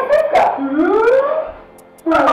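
Women's excited wordless exclamations, with one long cry rising in pitch that dies away near the end.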